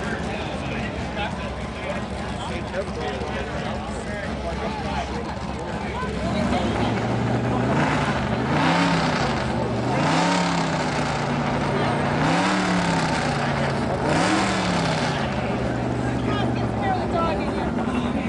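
Pulling tractor's engine idling, revved briefly four times and settling back to idle, over the chatter of a crowd.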